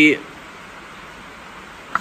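Steady rain on a tin roof: an even hiss with no rhythm, with one brief click near the end.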